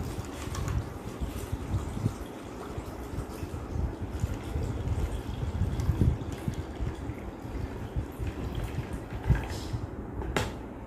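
Water poured slowly from a plastic mug into a clear jar of soil, a steady splashing trickle onto the soil, with a knock near the end.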